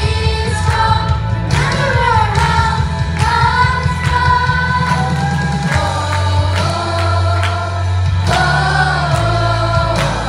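A group of children singing a worship song in unison into microphones, over backing music with a steady bass and a regular drum beat.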